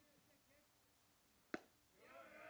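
A baseball fastball smacking into the catcher's mitt: one sharp pop about one and a half seconds in, after a swinging miss, against near silence.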